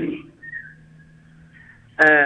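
A short pause on a telephone line between a caller's words: a low steady hum, and a faint high whistle-like tone that drifts slightly downward for about half a second.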